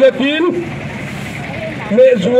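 A man singing into a handheld microphone, his phrase ending about half a second in, followed by a steady hiss of street noise.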